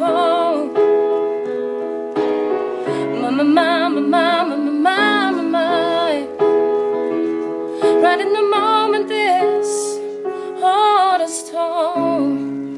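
Slow ballad music: a woman singing long, wavering phrases over held piano chords.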